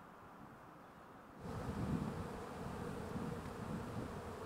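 Honeybees from an open hive buzzing in a dense hum, cutting in abruptly about a second and a half in after a faint, quiet stretch.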